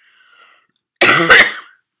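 A woman coughs once, short and loud, about a second in, after a faint breath.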